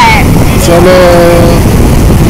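Strong wind buffeting the phone's microphone, a loud, continuous low rumble, with a woman's voice holding one long drawn-out note about halfway through.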